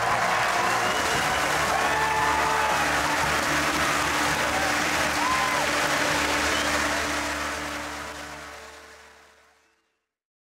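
Studio audience applauding over music, with a few whoops; the whole fades out over the last three seconds to silence.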